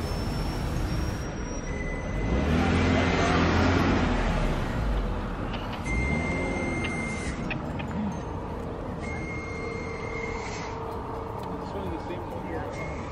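Road vehicle noise: a vehicle's rumble swells about two seconds in and fades after about five seconds, leaving a steady lower traffic rumble.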